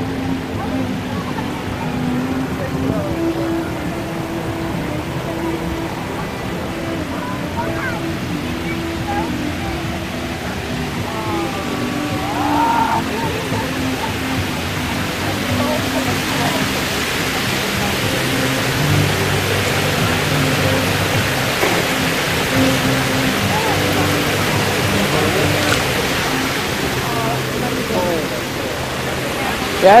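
Steady rushing hiss of a water-wall fountain, growing louder through the second half, over background music with long held notes and a few passing voices.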